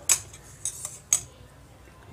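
Metal utensil clinking against a stainless-steel mixing bowl: four short, sharp clinks in just over a second, the first and last the loudest.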